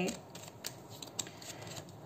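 Tarot cards being handled and one drawn from the deck: faint papery sliding with a few light card clicks.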